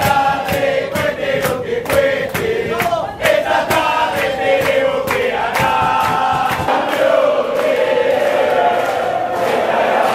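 A crowd of Argentina football supporters chanting a song together, with sharp beats about twice a second. About two-thirds of the way in the beats stop and the chanting goes on.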